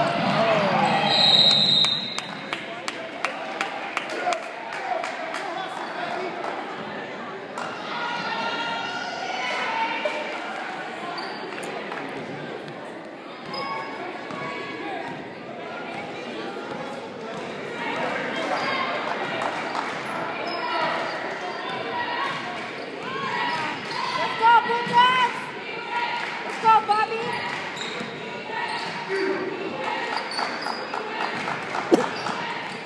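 Basketball dribbled on a hardwood gym floor, with repeated bounces and sneaker squeaks during a game, under voices chattering in a large echoing gym. A short high whistle blast sounds about a second in.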